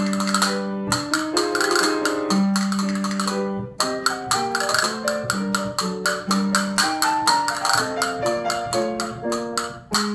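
Castanets played in fast clicking rolls over a melodic instrumental accompaniment of held notes, with a short break in the clicking about three and a half seconds in.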